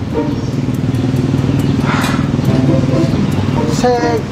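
A motorcycle engine running steadily close by, a low even engine note with a brief hiss about halfway through.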